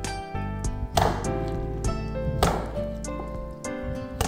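Background music, with a few dull thuds a second or so apart as a shrimp-and-fish dumpling filling is lifted and slapped by hand against a glazed ceramic bowl. The filling is being beaten until it turns springy.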